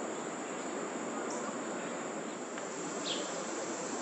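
A steady high-pitched insect trill, like crickets, holds over a constant wash of outdoor background noise. A single short chirp comes about three seconds in.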